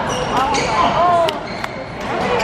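Badminton rackets striking a shuttlecock in a fast doubles rally: a few sharp pops in quick succession, with voices in the background.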